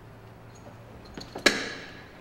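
Strapped bundle of fire hose being pulled off a fire engine's rear hose bed. A couple of light clicks, then a single sharp metallic clank about one and a half seconds in that rings briefly as it dies away.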